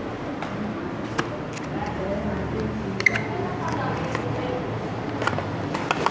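Cardboard product box being handled and opened: scattered light clicks and rustles over a steady background hum and faint background voices.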